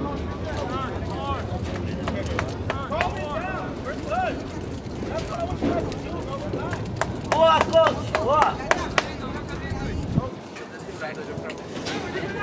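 Distant shouts and calls of soccer players on the pitch, short and scattered, loudest about seven to nine seconds in, with a few sharp knocks. A low rumble runs under them and cuts off suddenly about ten seconds in.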